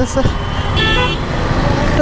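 A short vehicle horn toot, under half a second long, about a second in, over steady low traffic noise.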